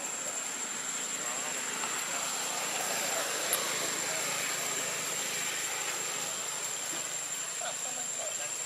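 Outdoor ambience: a steady high-pitched insect drone over a broad rushing background of distant engine noise, which swells a little in the middle and eases off again.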